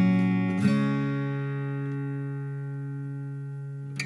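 Background music of strummed guitar chords: a strum at the start and another just over half a second in, which rings and slowly fades until a new strum right at the end.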